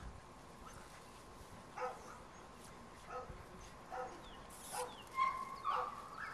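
Seven-week-old puppies yipping and barking in short, high yelps, roughly once a second, the loudest ones near the end.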